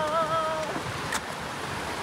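Steady rush of a fast-flowing forest river running over rapids. A drawn-out voice wavers over it in the first half-second, and there is a brief click about a second in.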